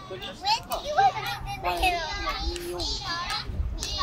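Children shouting and calling to one another while playing soccer, several high voices rising and falling in pitch.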